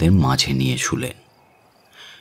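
A narrator's voice for about the first second, then a pause in which faint cricket chirping is heard as night-time background.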